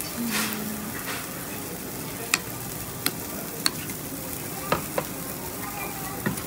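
Meat sizzling steadily on a tabletop yakiniku grill, with a metal spoon clinking against a ceramic bowl about five times in the second half.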